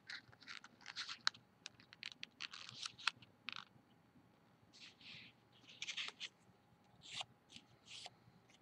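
A paper dollar bill being folded and creased by hand: faint, short papery crinkles and scratches in clusters, with a brief lull about halfway through.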